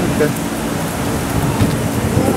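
Wind buffeting the camera's microphone: a rough, uneven low rumble over a steady hiss.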